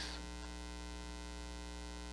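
Steady electrical mains hum, one low tone with a ladder of overtones above it, holding unchanged in a pause between spoken words.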